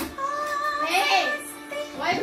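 A girl singing a song, holding one note and then bending the pitch up and down about a second in, with musical accompaniment, heard through a television's speaker.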